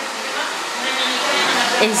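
Hand-held hair dryer blowing steadily, a constant rushing noise, with a voice coming in near the end.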